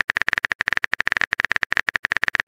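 Typing sound effect: a fast, irregular run of keyboard clicks, about fifteen or more a second, signalling that the next chat message is being typed.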